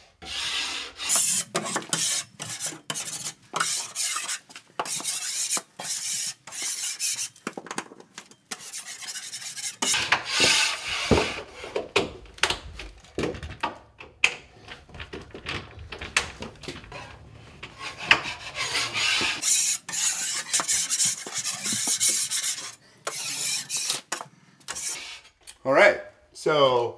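Metal putty knife drawn across the paper face of drywall in repeated scraping strokes, with a few sharp clicks, checking that the screw heads sit below the surface.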